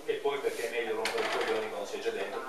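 People talking in a small room, with one sharp click or knock about a second in.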